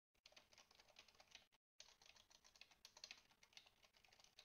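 Faint computer keyboard typing: a quick run of keystrokes with a short break about one and a half seconds in.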